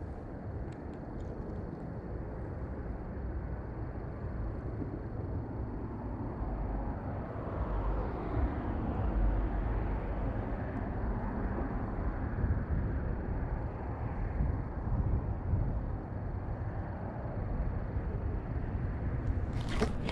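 Steady outdoor background noise, a low rumble that swells a little through the middle of the stretch and then settles.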